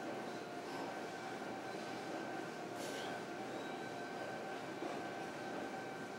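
Steady gym room noise, an even hum with a faint high tone running through it, and one brief light clink about three seconds in.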